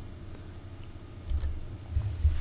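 Quiet room tone, a low hum with faint hiss, broken by two soft, low thumps: one a little over a second in and one at the end.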